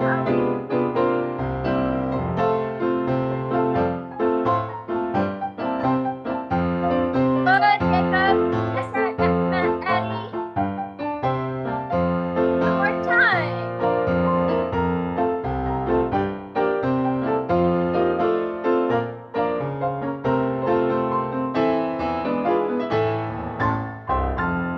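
Live piano playing a steady, rhythmic accompaniment for a ballet class exercise, with a brief voice calling out over it twice.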